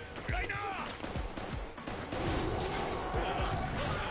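Dramatic anime score with a steady low drum beat. A voice calls out briefly about half a second in.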